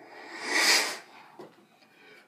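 A mouth-made sound effect imitating a military sound, blown through a hand cupped over the mouth: a hissing rush that swells for about half a second and dies away within a second. A small click follows.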